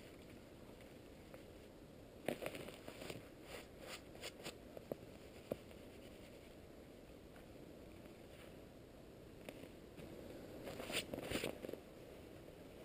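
Dry grass tinder crackling and rustling as it is twisted and rolled into a bird's nest by hand, in two spells of crisp crackles, the second near the end, heard through a camera's waterproof housing.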